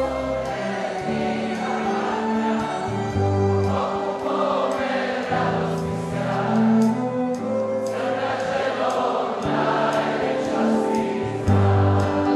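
Live concert music: a band and orchestra play a song while many voices sing together in chorus.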